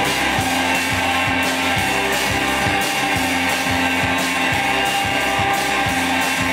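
Live rock band playing: electric guitars and a drum kit keeping a steady beat, loud and dense.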